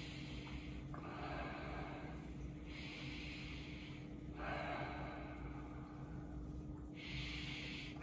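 A man sniffing a glass of lager with his nose at the rim: about four long, soft breaths in and out through the nose, each a second or more, smelling the beer.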